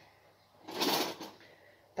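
A brief scraping, sliding noise, about half a second long, a little under a second in, from something being handled at the kitchen counter.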